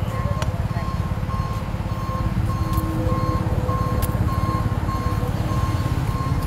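Tow truck's reversing alarm beeping a single steady tone about twice a second, over a low steady rumble.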